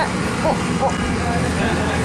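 Steady low engine drone and rumble heard inside an airport apron shuttle bus, with faint voices in the background.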